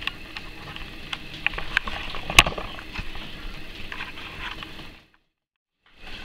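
Handling noise as a camera is moved and set in place: scattered light clicks and knocks, with one sharper knock a little past two seconds in. Near the end the sound cuts to dead silence at an edit.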